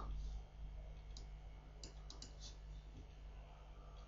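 Several faint computer mouse clicks, about five, scattered between about one and two and a half seconds in, over a steady low hum.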